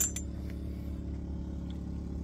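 Steady low engine hum running evenly, with a brief click right at the start.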